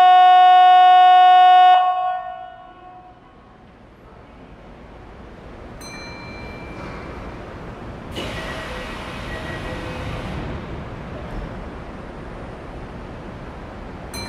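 Station departure buzzer sounding loud and steady for about two seconds, echoing under the station roof as it cuts off, signalling that the train is about to leave. A hiss of air follows about eight seconds in, lasting about two seconds over the low hum of the waiting train.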